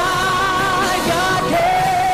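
Live gospel music with a band: a sung voice holds long, wavering notes, stepping to a new held pitch about one and a half seconds in.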